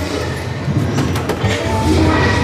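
Steady din of a busy hall, with background music, a low rumble and a few short, sharp clicks.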